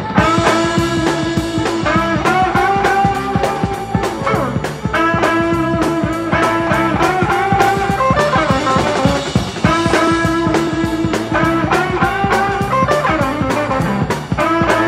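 Live blues band playing an instrumental boogie passage: electric guitar over bass and drums, with a steady fast beat.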